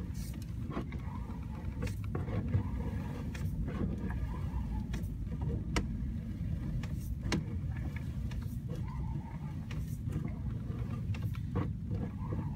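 Steady low rumble of an engine running, with scattered sharp clicks and knocks.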